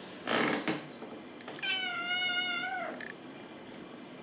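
A kitten gives one long meow at a steady, fairly high pitch that falls off at its end, about a second and a half in. Just before it, near the start, comes a short, louder burst of scuffling noise.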